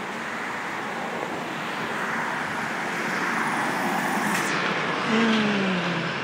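Road traffic noise from a passing vehicle, slowly growing louder, with a short low tone falling in pitch near the end.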